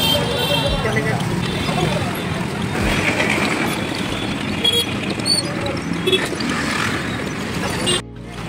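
Street traffic: cars and motorbikes passing close by with steady engine and road noise, mixed with people's voices talking in the background.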